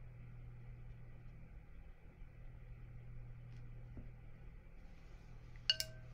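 Quiet studio room tone with a steady low hum, then a single sharp clink with a brief ring near the end as a paintbrush knocks against the watercolor paint box.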